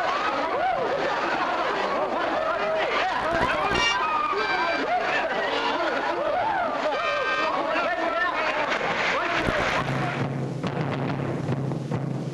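Many voices shouting and calling at once over splashing water. About ten seconds in, the voices give way to a low steady musical drone as hand drumming begins.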